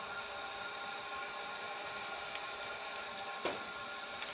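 Steady room hum and hiss, with a few faint light clicks in the second half and a soft knock about three and a half seconds in.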